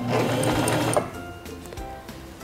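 Singer Simple 3232 sewing machine stitching forward for about a second, then stopping, over background music.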